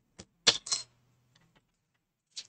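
Pencils clicking against each other and the tabletop as a hand picks them up: a light click, then two sharper clacks close together about half a second in, then a few faint taps.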